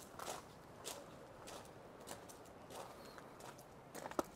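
Faint footsteps crunching on a gravel path, a little under two steps a second.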